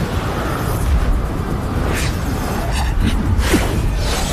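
Dramatic battle music over a deep rumble, with whooshes and sharp impacts about two and three seconds in: the sound effects of flying blades streaking through the air and striking armour in an animated fight.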